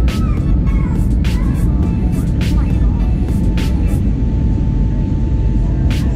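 Airliner cabin noise during the climb after takeoff: a loud, steady low roar of jet engines and airflow. Background music with a regular beat, about one hit a second, plays over it.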